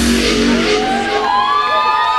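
Dance-music breakdown played live: the drums and bass drop out, and synthesizer tones glide upward in pitch and then hold.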